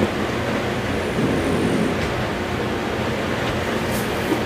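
A steady low rumbling noise with a faint hiss over it, holding level throughout.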